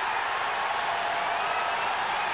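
Stadium crowd cheering a goal, a steady, dense wash of noise.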